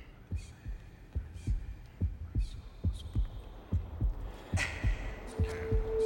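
A low, heartbeat-like thumping pulse repeats evenly at about four thumps a second, as a suspense sound effect. A sustained tone comes in near the end.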